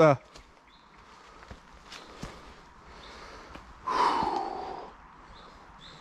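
Footsteps scuffing and clicking on a stony riverbank, then about four seconds in a loud, breathy exhale lasting about a second.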